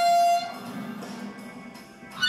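Blues harmonica holding a single note for about half a second, then dropping to a quiet, breathy pause between phrases.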